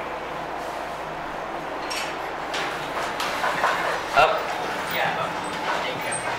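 Indistinct voices of people talking nearby as the elevator doors slide open, with one short, sharp, louder sound about four seconds in.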